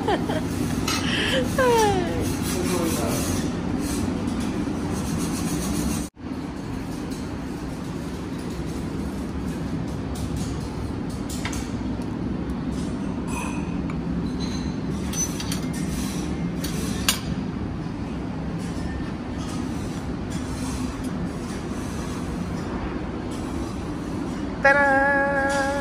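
Steady low hum of a restaurant's ventilation and extractor hood over a buffet counter, with a few light clicks and clinks of dishes and serving utensils.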